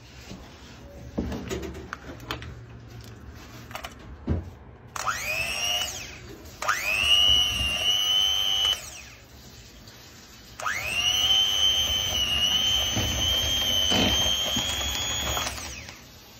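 Electric hand mixer beating curd-cheese batter for syrniki in a plastic bowl. It is switched on three times, each start a rising whine: a short run about five seconds in, a second of about two seconds, then a longer run of about five seconds. Light handling knocks come before it.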